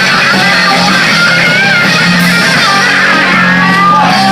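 Live rock band playing loud: electric guitars, bass guitar and drums, with a lead line whose notes bend up and down from about a second in.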